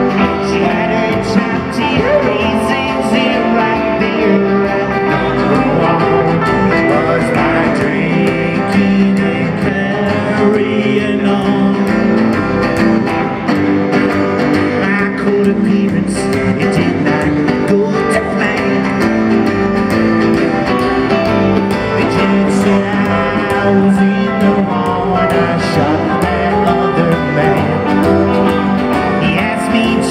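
A live country/honky-tonk trio playing a song: upright double bass, strummed acoustic guitar and electric guitar, played steadily through a stage PA.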